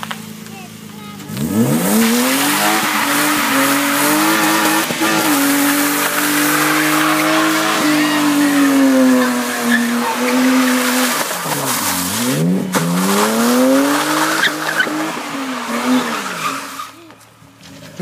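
BMW sedan's engine held at high revs while the rear tyres spin and squeal as the car drifts in circles on a slick road. The revs climb steeply about a second in, dip and climb again twice, then drop away near the end.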